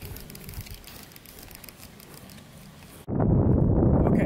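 Quiet open-air background with faint scattered clicks, then, about three seconds in, a sudden change to loud wind rumbling on the microphone.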